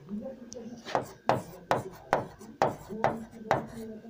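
A pen tapping against the hard surface of a display board, about seven sharp taps roughly half a second apart.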